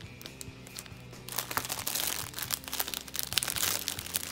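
Clear plastic packaging bag crinkling and rustling as it is handled, starting about a second in, over faint background music.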